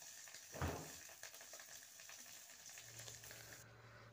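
Fish frying in oil in a steel wok, a faint steady sizzle, with a single knock about half a second in.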